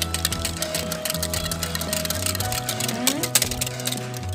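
Wire whisk beating a cream and cream-cheese sauce in a glass bowl, a fast, continuous run of metal ticks against the glass. Background music plays underneath.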